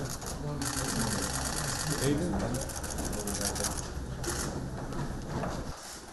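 Press cameras' shutters firing in rapid continuous bursts, several runs one after another, over a murmur of voices.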